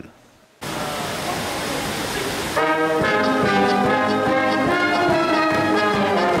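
A Bavarian-style German folk brass band, with brass horns and clarinet, strikes up loudly about two and a half seconds in, after a brief quiet gap and a stretch of background noise.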